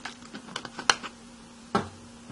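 Computer keyboard keystrokes: a quick run of sharp clacks in the first second, the loudest near one second in, then one more near the end.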